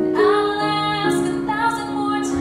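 A woman singing a slow, tender song over sustained instrumental accompaniment. Her voice comes in just after the start, holding long notes.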